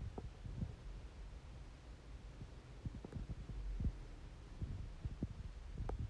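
Faint low hum of a Volkswagen T-Roc's electric tailgate closing under power after its close button is pressed, with scattered soft low thumps through it.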